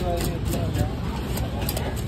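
Background voices over a steady low rumble, with a few faint scraping strokes of a cleaver scaling a fish on a wooden block.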